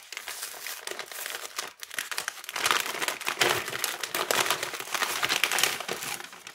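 Kraft-paper gift bag rustling and crinkling as it is opened, then a cellophane packet crinkling as it is pulled out. The crinkling gets busier and louder about halfway through.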